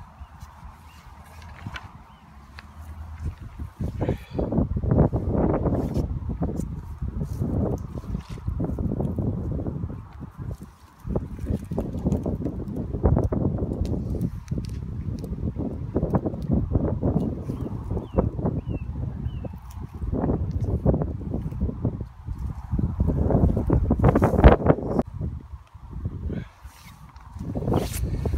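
Gusty wind buffeting the microphone: a low rumble that swells and drops away in uneven gusts. A few faint high calls, like waterfowl, come through around halfway.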